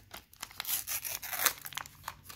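The wrapper of a 1989 Upper Deck baseball card pack being torn and peeled open by hand: a run of crinkly tearing noises, loudest about one and a half seconds in.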